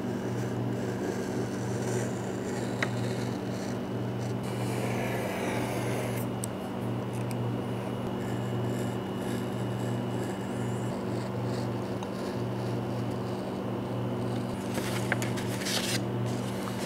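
Utility knife cutting through a kraft-paper pattern on a cutting mat, with paper scraping and rustling and a few light clicks, over a steady low hum.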